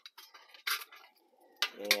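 Light metallic clinks and rattles of thin sheet-metal stove panels being handled and fitted into an Altoids tin, with one sharper clink a little under a second in.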